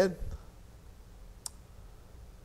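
The last syllable of a spoken question, then quiet room tone with one short, sharp click about a second and a half in.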